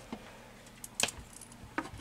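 A few light clicks and knocks of hard plastic multimeter housings being handled, the sharpest about a second in.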